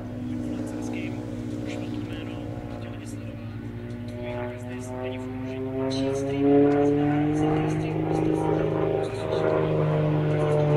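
Aerobatic plane's piston engine and propeller droning overhead, holding a steady pitch and then rising in pitch from about six seconds in as the power comes up.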